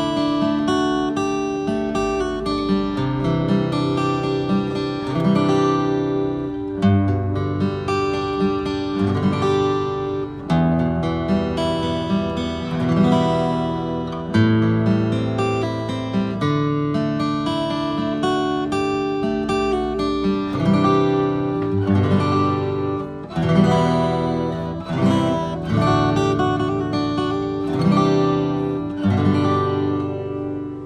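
Enya EGA-X1pro acoustic guitar played unplugged, its own acoustic tone: chords picked out note by note in a continuous flowing pattern, with strong bass notes and a chord change every second or two.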